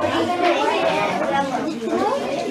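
Indistinct chatter of several voices, children talking among themselves.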